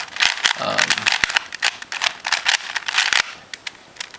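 A lubed DIY 3x3 Rubik's cube faced with glued-on LEGO 2x2 tiles being turned fast by hand: a rapid run of plastic clicks and clacks as the layers snap round. It thins out to a few scattered clicks a little over three seconds in.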